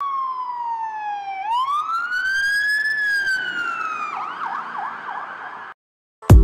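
Emergency vehicle siren: a slow wail that falls, rises and falls again, then switches to a quicker yelp of several short swoops before cutting off suddenly near the end.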